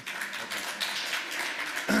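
Audience applauding: scattered claps thicken into steady applause from many hands.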